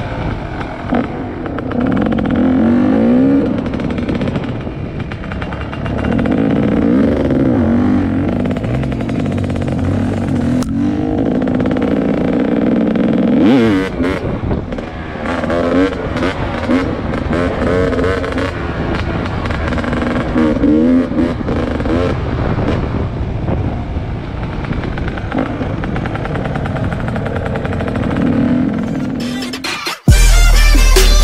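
Dirt bike engine heard close from the rider's helmet camera, revving up and dropping back over and over as it is ridden along a rough dirt trail, with a few sharp knocks midway.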